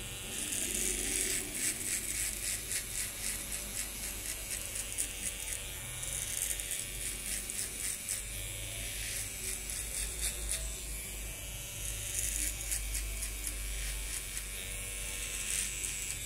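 Electric hair clipper running steadily while cutting short hair on the back of the neck, its blades rasping through the hair in rapid repeated strokes as a fade is blended.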